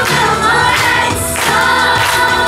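A group of children singing a song together in unison over musical accompaniment, holding long notes that glide from one pitch to the next.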